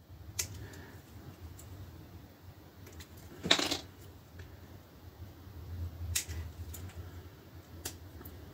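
Plastic model-kit sprue being handled and cut with small jeweler's side cutters: a few sharp plastic clicks and snaps, the loudest a short crackle about three and a half seconds in.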